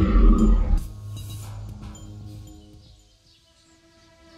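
The end of a loud monster roar sound effect, which cuts off under a second in. Soft background music with held tones goes on beneath it and fades almost to nothing near the end.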